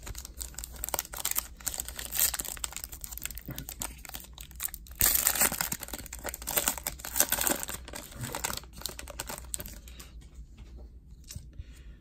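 Foil trading-card pack wrapper being torn open and crinkled by hand, an irregular crackling that is loudest for a couple of seconds about halfway through.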